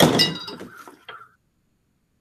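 A sharp metallic clink with a short high ring that dies away within about a second, from a knife and the metal sheet pan being handled on a table. A smaller knock follows, then the sound cuts out to dead silence.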